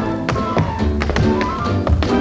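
Tap dancing: several sharp taps of metal-tipped tap shoes on a hard floor, over a dance-band orchestra playing a song tune.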